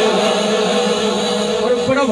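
Man chanting a devotional naat into a microphone, holding long steady notes.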